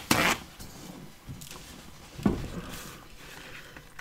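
Two short papery rustles, a loud one at the start and a smaller one about two seconds later, as a paper towel is handled to wipe a water brush clean.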